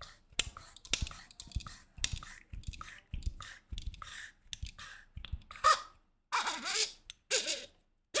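Hands unscrewing the threaded metal sections of a lightsaber hilt, a run of small irregular clicks and scrapes as the parts turn. Near the end come a few soft breathy sounds.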